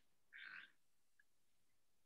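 Near silence, with one faint, brief sound about half a second in.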